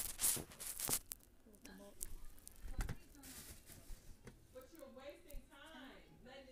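Rustling and handling noise close to the microphone, loudest in the first second, with a few sharp clicks after it, then a quiet voice murmuring near the end.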